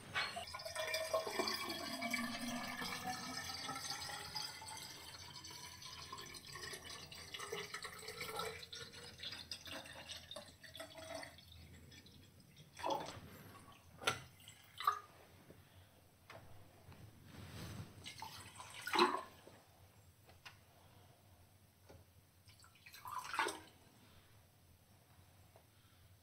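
Water poured from a plastic bottle into a tall glass graduated cylinder, a ringing pour whose pitch climbs as the cylinder fills, lasting about eleven seconds. After that come a few short knocks and clinks.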